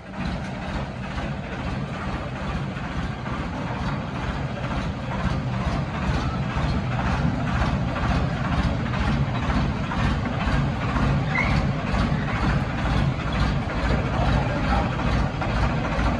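Swaraj 969 FE tractor's three-cylinder diesel engine running steadily under load as it pulls a heavy trailer of logs, with an even, rapid firing beat that slowly grows a little louder.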